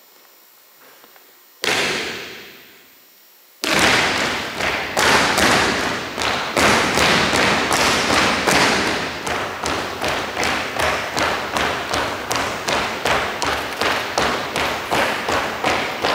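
A rhythmic marching cadence in a large echoing hall. One loud thump rings out about two seconds in. A little later a steady run of sharp beats starts, about two or three a second, over a continuous rattle, and keeps going.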